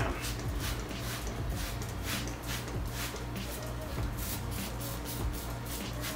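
Trigger spray bottle on its mist setting pumped over and over, about two to three short hissing sprays a second, soaking a pleated air filter with soapy water. Quiet background music runs underneath.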